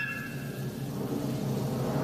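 A low cartoon rumble sound effect that slowly swells.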